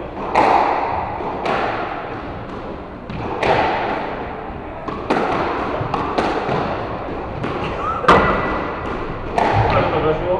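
Squash rally: the rubber ball struck by rackets and smacking off the court walls, a sharp hit about every second or so, each one ringing on in the enclosed court.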